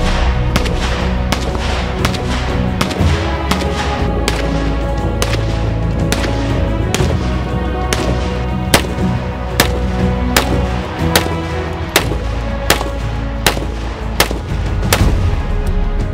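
Vz.52 semi-automatic rifle in 7.62x45 firing single shots in quick succession, roughly one or two a second, over background music.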